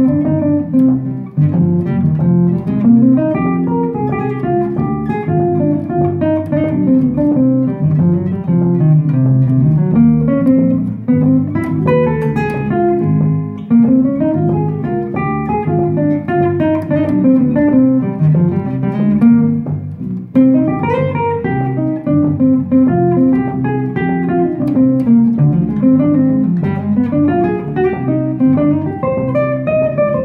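Acoustic guitar and electric bass guitar playing a jazz bossa nova. The guitar plays rising and falling single-note runs over a plucked bass line.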